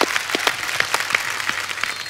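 Studio audience applauding, a steady patter of many hands clapping.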